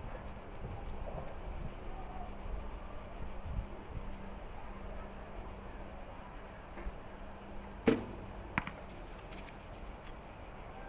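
A single shot from a recurve bow: the bowstring snaps loudly on release near the end, and about half a second later a fainter knock follows as the arrow strikes a straw target boss 25 m away.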